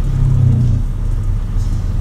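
Diesel engine and road rumble of a Peterbilt semi truck heard from inside its cab, a steady low drone that is a little louder in the first second.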